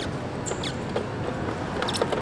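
A wall-mounted plastic hand-sanitizer dispenser being pumped by its push lever, with short plastic squeaks and clicks over a steady hiss. The dispenser is empty and gives nothing out.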